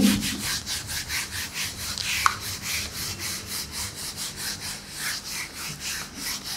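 A handheld whiteboard duster rubbed back and forth over a whiteboard, erasing marker writing in quick, even strokes.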